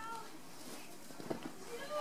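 Faint voices in the background, with soft rustling and a few light clicks as a hand and a baby squirrel tussle on a fleece blanket.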